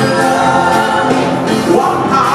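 Live gospel music: a man sings lead into a microphone over a choir of backing voices, loud and unbroken.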